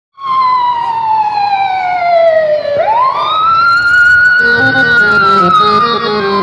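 A loud siren-like gliding tone that falls slowly, swoops back up about three seconds in, then falls slowly again. From about four and a half seconds, a tune of stepped notes plays under it as a song's backing music begins.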